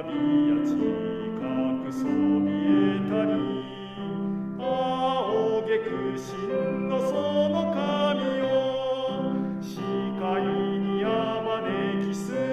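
An operatically trained male voice singing a Japanese school song with piano accompaniment, in a slow, sustained melody with vibrato.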